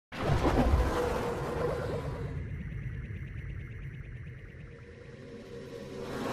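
Synthesized logo-intro sting: a loud hit with a deep boom at the start that fades slowly, then a swell building up again near the end.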